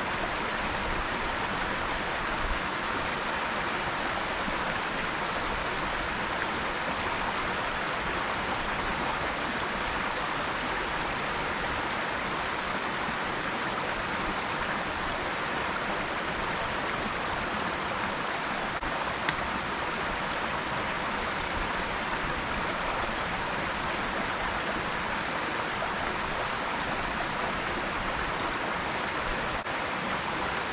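Small rocky stream running over a little cascade of stones, a steady rushing hiss. One brief click a little past halfway.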